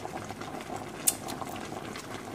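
Vinegar-and-water sauce simmering in a wok around milkfish and vegetables, bubbling and crackling steadily, with a single light click about a second in.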